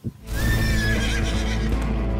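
A horse whinny sound effect starts about a quarter second in, laid over the start of the outro music, which has a steady deep bass.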